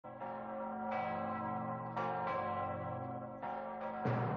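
Bells struck one at a time, about five strikes in four seconds, each note ringing on under the next.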